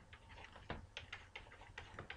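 Faint light taps and ticks of a stylus on a pen tablet while handwriting is written, about three or four small clicks a second.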